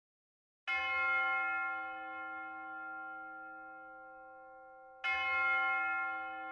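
A bell struck twice, about four seconds apart, each stroke ringing out and slowly fading; the second is still ringing at the end.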